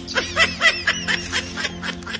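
High-pitched snickering laughter, a quick run of short laughs about five a second, over a background music bed.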